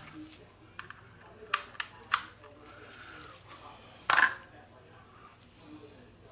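Light plastic clicks and handling noise as a USB cable is fitted into a small DJI wireless microphone to charge it: a few sharp ticks in the first two seconds and a louder short click about four seconds in.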